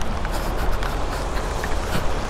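Wind buffeting and rain noise on a camera microphone moving through wet weather: a steady low rumble under a hiss, with scattered small ticks.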